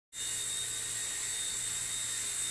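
Genius CP V2 micro collective-pitch RC helicopter in flight, its motor and rotor giving a steady high-pitched whine that starts abruptly.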